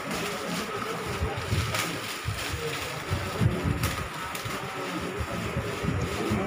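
Indistinct murmur of people in a small room, with low rumbling handling and wind noise on the microphone and a few faint crackles.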